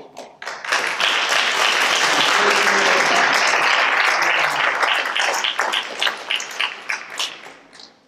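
A congregation applauding: a burst of dense clapping that holds for a few seconds, then thins into scattered single claps and dies away near the end.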